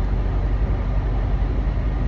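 Semi-truck's diesel engine running, a steady low rumble heard from inside the cab.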